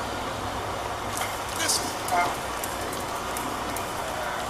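Indistinct voices of people in a room, with a brief spoken sound about halfway through, over a steady hiss of home-video tape noise.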